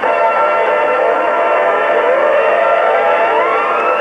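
Background music of held chords, with several tones gliding upward in pitch over the second half.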